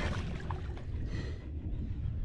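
Wind rumbling on a handheld camera's microphone at the water's edge, with faint noise from shallow river water.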